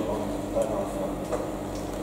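Quiet hall with faint, indistinct voices and a couple of light clicks.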